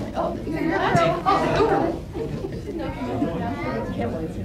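Indistinct chatter: several voices talking at once in a room, loudest in the middle.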